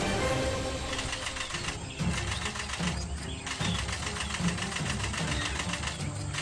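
Background music with a steady, rhythmic beat.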